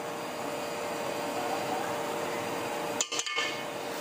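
Beef pieces frying in oil in a cooking pot: a steady sizzle with a faint hum under it. The sound breaks off briefly about three seconds in, with a couple of short clicks.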